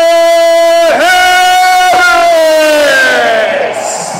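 A man's voice shouting a player's name in drawn-out arena-announcer style: it holds one loud pitch for about three seconds, breaking briefly twice, then falls away over the last second.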